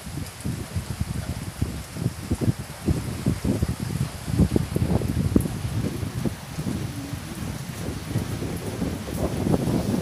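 Rain falling on floodwater and foliage, with wind buffeting the microphone in irregular low rumbles.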